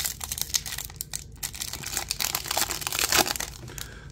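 Foil trading-card pack wrapper being torn open and crinkled by hand: a dense run of sharp crackles and crinkles.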